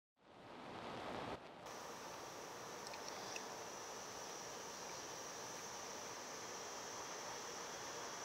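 Faint, steady hiss of microphone background noise (room tone) with a thin, high-pitched whine, briefly dropping out about one and a half seconds in.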